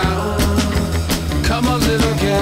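Background music with a steady beat: drums, bass and sustained pitched notes.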